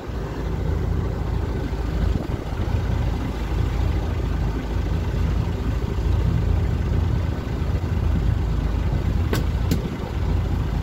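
Small fishing boat's engine idling: a steady low rumble. Two sharp clicks come near the end.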